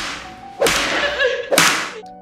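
Cane strikes: three sharp lashes, one just at the start and two more about a second apart, each trailing off in an echo.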